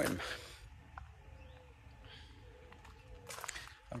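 Quiet outdoor ambience between words: a faint steady hum and a single light click about a second in, with a brief rustle near the end.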